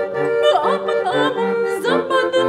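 A hand-cranked barrel organ playing a punched paper music roll: steady held chords over a regular bass pattern. A woman sings a Turkish folk song over it in karşılama rhythm, her voice sliding and bending between notes.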